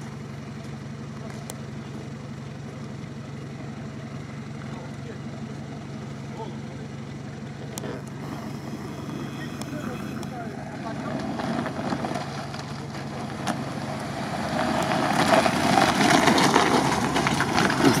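Lada Niva's engine running at low revs as the 4x4 creeps down an icy, snow-covered slope, steady at first. Over the second half it grows louder and rougher as it draws near.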